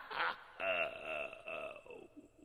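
A cartoon ghost's gurgling, cackling laugh trailing off in a few slow pulses that fade away.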